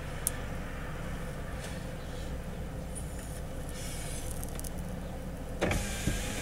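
Steady low running hum inside a closed car's cabin. A short, louder puff of breath near the end as smoke is blown out.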